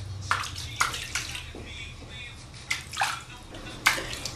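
Water splashing and sloshing in a hot tub in a few short, irregular splashes, as a person moves about in the water.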